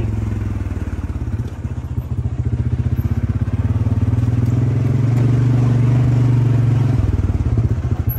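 Four-wheel-drive vehicle's engine running as it drives slowly, a steady low hum that grows louder through the middle and changes tone about seven seconds in.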